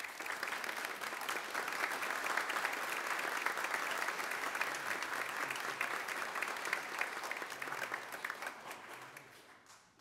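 Congregation and choir applauding, many hands clapping together. It starts suddenly and dies away over the last second or two.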